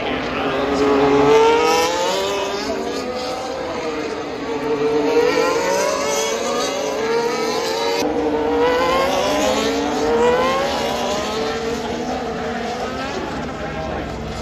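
Formula 1 cars' turbocharged V6 engines racing through the corners, several overlapping engine notes rising and falling in pitch as cars accelerate and pass in a stream. The sound is loudest about a second in, again at about five seconds and again near ten seconds.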